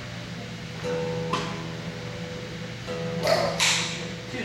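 Steel-string acoustic guitar strummed, its chord ringing on; new strums come about a second in and again near the end, the last with a bright scratchy stroke across the strings.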